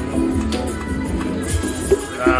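Goldfish Feeding Time video slot machine playing its looping game music and reel sound effects while the reels spin and land, with a short sharp effect just before the end as a small win lands.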